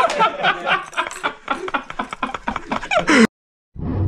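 People laughing excitedly in quick, falling-pitched bursts, which cut off suddenly about three seconds in; a brief low sound follows near the end.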